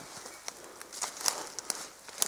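Footsteps through forest leaf litter and undergrowth: a few irregular soft crunches and rustles.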